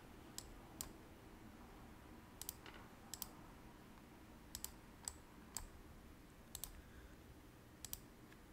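Faint computer mouse clicks, about a dozen spread irregularly, several coming in quick pairs like double-clicks, over quiet room hum.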